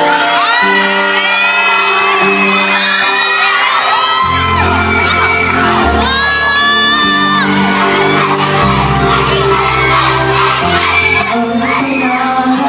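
Music played loud, with a bass line coming in about four seconds in, over a crowd of children shouting and cheering.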